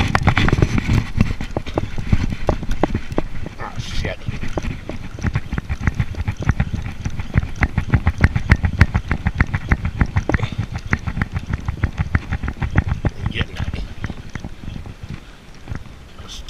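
Spinning reel being cranked steadily to wind in line, its gearing giving a rapid, even clicking over a low handling rumble close to the microphone.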